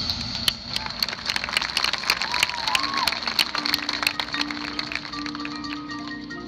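Marching band music: the full band cuts off at the start, leaving a quiet percussion passage of sparse sharp clicks and rattles over a high steady tone. A held low note comes in about three and a half seconds in, and mallet notes enter near the end.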